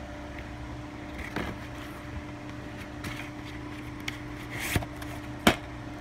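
Plastic DVD case and disc being handled: a few sharp clicks and a brief rustle over a steady low hum.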